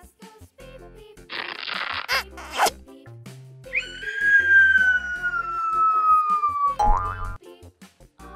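Children's background music with cartoon sound effects laid over it: a burst of hiss, two quick rising swishes, then a long, slowly falling whistle-like tone of about three seconds, and a short rising tone with a low thud near the end.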